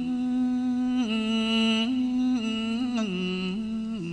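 A male singer holding a slow, drawn-out vocal line in Thai luk thung style, stepping from one long note to the next with a slight waver on each.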